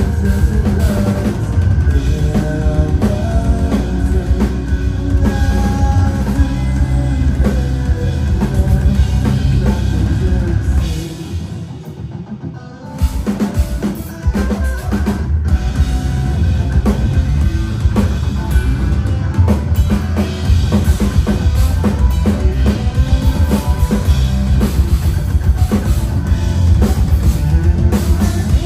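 A progressive metal band playing an instrumental passage live: distorted electric guitars over a driving drum kit and bass. The band thins out for about two seconds near the middle, then comes crashing back in at full volume.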